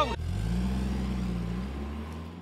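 Jeep engine running as the jeep drives away, a steady low hum that rises a little in pitch just after the start and begins to fade near the end.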